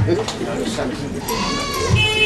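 People's voices at a gathering, with one drawn-out, arching call about one and a half seconds in.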